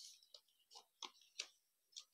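Thin printed joss paper crinkling as it is pleated and pressed by hand: a string of short, faint, crisp crackles, about five or six in two seconds.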